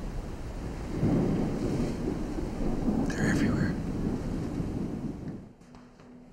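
Deep, rolling thunder rumble that swells about a second in and cuts off suddenly near the end.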